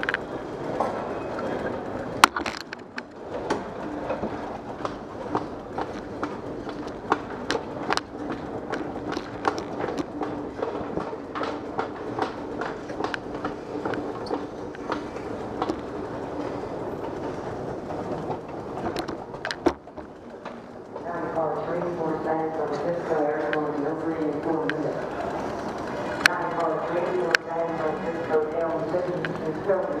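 Escalator running with a steady low hum and irregular clicks and knocks from its steps while carrying riders up. In the last third a person's voice is heard over it.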